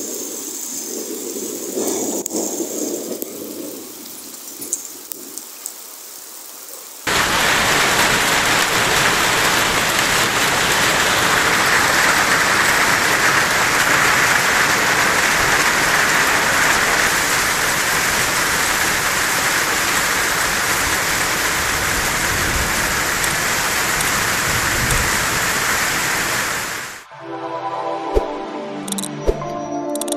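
Hailstorm downpour. For about the first seven seconds there is a quieter hiss with a few scattered ticks. Then, after a sudden cut, comes a loud, steady hiss of heavy rain and hail pouring onto trees and rooftops, which stops abruptly near the end as a short music sting begins.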